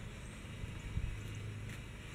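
Low, steady rumbling background noise with no distinct events.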